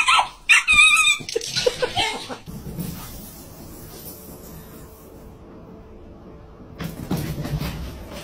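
A small dog barking in a quick string of high-pitched yaps over the first two seconds or so, then only a low background until a further burst of sound near the end.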